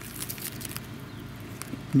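Faint scratching and scattered small ticks of plastic rubbing and handling as a dock light, still in its plastic wrap, is pushed with its rubber gasket into the cut-out in a boat hull.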